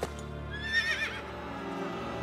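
A horse whinnies once, a short wavering call about half a second in, over a bed of background music.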